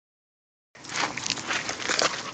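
Silent for the first moment, then a scratchy, crunching noise of footsteps on loose gravel.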